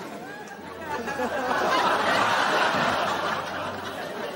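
Studio audience laughing: many voices at once, swelling about a second in and easing near the end.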